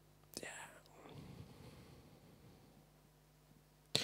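A sharp click, then about two seconds of faint whispering.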